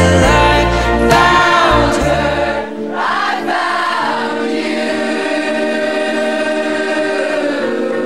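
Live band music with singing: a sung melody over guitar and a strong bass line. About a third of the way in the bass drops out, leaving a long held chord with layered voices.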